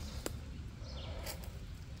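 A few short, high bird chirps about a second in, over a steady low background rumble, with a faint click near the start.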